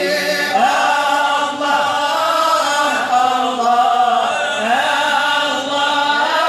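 A group of men chanting Moroccan Sufi praise of the Prophet (amdah) together, voices only, in a steady melodic line.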